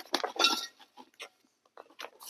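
Cactus potting mix poured from its bag into a terracotta pot: a dense rattling patter of grit hitting the clay that thins to a few scattered ticks about a second in.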